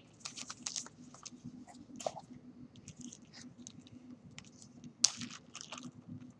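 Newspaper and a plastic zip-top bag being handled: a scattered run of small crinkles and clicks, with one sharper snap about five seconds in.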